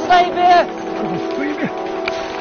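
A raised voice shouting a short command to spread out and take cover, loudest in the first half-second, followed by a couple of shorter calls, over steady background music.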